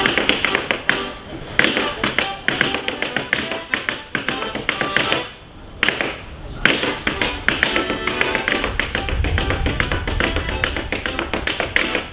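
Wooden-soled clogs beating a rapid, intricate rhythm of taps on a stage floor in a clog-dance hornpipe, accompanied by a squeezebox playing the tune. The steps break off briefly about five seconds in.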